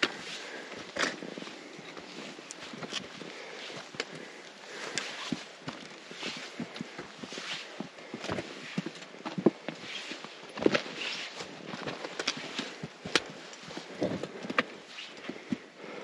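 Hiking footsteps on loose rock and gravel: irregular crunches, scuffs and sharp clicks of feet on stony ground.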